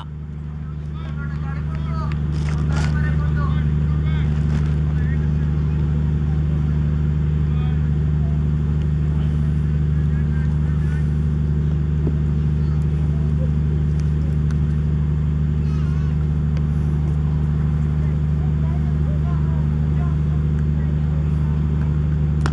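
Steady low machine hum that holds unchanged throughout, with faint distant voices in the first few seconds.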